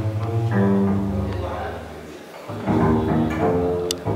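Live jazz clarinet playing a melody of held notes over a plucked upright double bass. The phrase pauses briefly about halfway through, and there is a single sharp click near the end.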